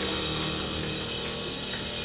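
A jazz quartet holding the final chord of a slow ballad: steady sustained notes with a continuous hiss from the drums over them.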